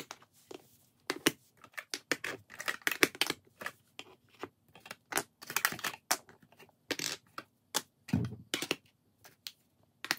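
Plastic makeup compacts, jars and sticks clacking as they are picked up and set down on a wood-look floor: a run of irregular sharp clicks and knocks.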